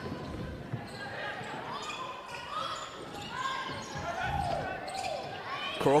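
A basketball being dribbled on a hardwood court during live play, with players' voices calling out faintly in a large gym.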